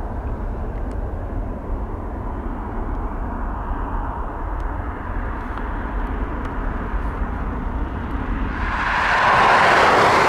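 Airbus A330-300 airliner's jet engines rumbling steadily as it climbs away after takeoff. Near the end a louder rushing noise swells up and fades.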